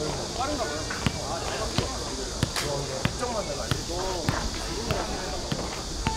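A ball bounced repeatedly, about three sharp bounces every two seconds, with voices talking in the background.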